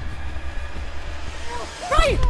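Low rumble with a steady hiss, with a man's scream starting about one and a half seconds in and growing louder at the end.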